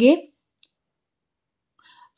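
A woman's speaking voice trails off, then near silence with a single faint click, and a faint breath just before she starts speaking again.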